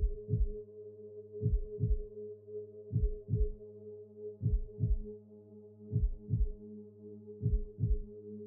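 Heartbeat sound effect: deep double thumps about every second and a half, over a steady low synth drone.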